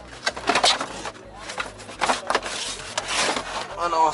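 Trunk lining and rubber trunk mat of a car being handled and pulled back: a series of short rustles and scrapes with a few sharper knocks.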